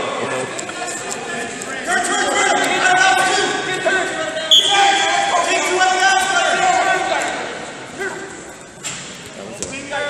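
Spectators talking and laughing in an arena hall, with a brief high steady tone about four and a half seconds in. The voices fade over the last few seconds.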